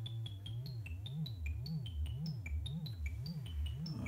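Modular synthesizer patch. A low oscillator tone holds steady for a moment, then LFO frequency modulation swings its pitch up and down about twice a second. Over it runs a quick series of short high blips jumping between pitches.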